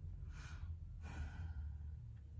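A woman breathing audibly in a soft sigh: two breaths, in and out, each about half a second long, over a steady low hum.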